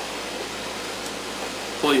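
Steady background hiss of room noise, like air conditioning. A man's voice begins near the end.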